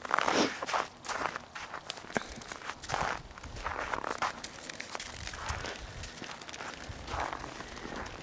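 Footsteps on a snow-covered road, a series of irregular, uneven steps, louder in the first few seconds.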